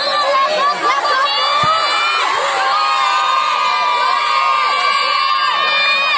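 A large crowd of spectators shouting and cheering at a football penalty kick. From about two seconds in it swells into long held yells from many voices.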